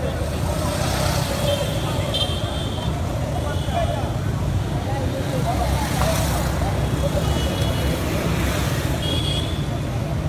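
Street sound of motorcycles riding past and people's voices, over a steady low rumble, with several short high tones scattered through it.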